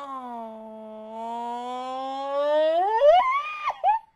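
A woman's long drawn-out vocal "ooh", held low at first, then rising steeply about three seconds in into a high-pitched squeal that breaks off near the end.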